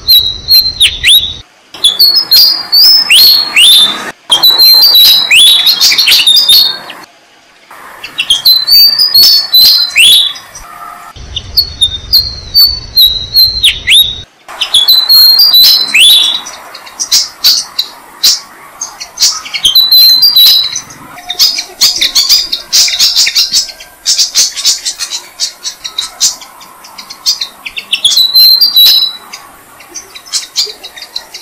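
Malaysian pied fantails calling: dense runs of high chirps and quick down-slurred notes, with a couple of brief pauses, busiest in the second half.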